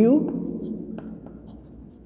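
Chalk writing on a blackboard: soft scratching strokes with a few light taps of the chalk against the board.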